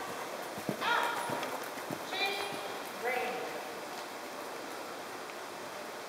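Hoofbeats of a ridden horse on the soft footing of an indoor arena as it passes close by, a few dull thuds in the first two seconds, fading as it moves away.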